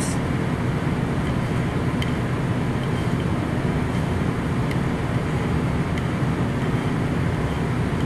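A steady low background rumble of unseen machinery runs throughout, with a couple of faint clicks from a knife tapping a ceramic plate as a tomato is diced.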